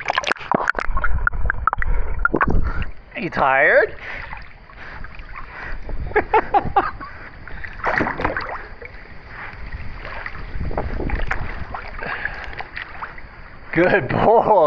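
Pool water splashing and sloshing close to the microphone as a dog paddles through it, in irregular bursts with a heavy low rumble over the first few seconds. A short vocal sound rises and falls about three and a half seconds in.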